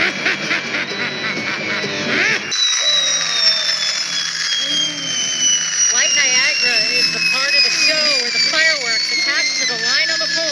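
Amplified groaning and moaning of the Zozobra effigy over loudspeakers, in repeated rising-and-falling cries. Behind them runs a long, slowly falling electronic tone. A denser mix of sound cuts off abruptly about two and a half seconds in.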